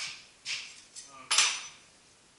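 Three metallic clanks as pieces of metal are handled and set down on a machine table. The third, about a second and a half in, is the loudest and rings briefly.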